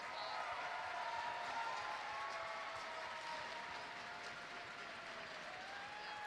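Arena crowd applauding, faint and steady, easing off slightly toward the end, with a faint murmur of voices in it.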